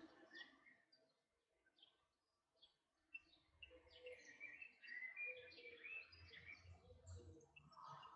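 Near silence: faint small clicks and soft handling noises of a glass jar being turned in the hands while plasticine slices are pressed onto it, with a few faint chirps midway.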